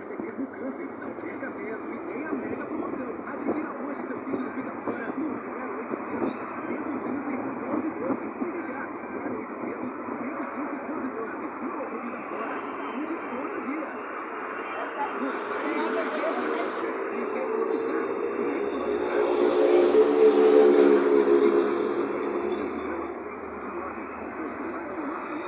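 Road noise inside a moving car, with a deeper engine hum that swells to its loudest about twenty seconds in and then fades, like a heavier vehicle passing close by.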